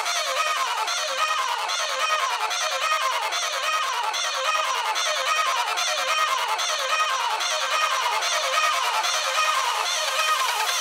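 Electronic dance track with all its low end cut away, leaving a short falling synth line that repeats about every three-quarters of a second over a thin, steady top.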